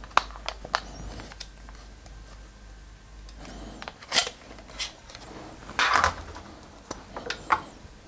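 Handling noise of a smartphone being taken out of a VR headset: scattered light plastic clicks and rustles, with louder rustling scrapes about four and six seconds in and again near the end.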